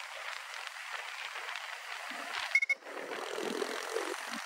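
Wind and road noise rushing over the microphone of a moving motorcycle, with a low engine rumble underneath. About two and a half seconds in there is a brief loud crackle, and near the end a large dump truck passes close by with a deeper rumble.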